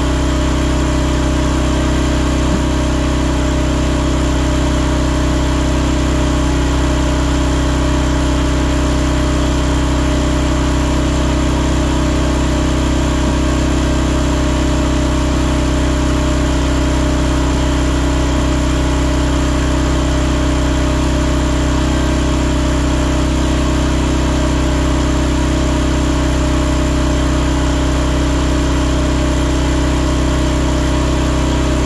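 Wolfe Ridge Pro 28C log splitter's gas engine running steadily at constant speed, loud and unchanging.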